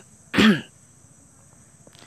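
A person clears their throat once with a short cough about half a second in.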